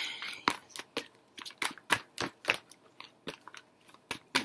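A tarot deck being shuffled by hand: irregular crisp snaps and clicks of the cards, a few each second.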